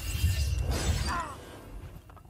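Bricks and masonry crashing and grinding, with a deep rumble that starts suddenly and dies away over the second half, over background music.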